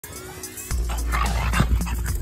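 Music with a deep, heavy bass beat that comes in under a second in, with a dog barking over it.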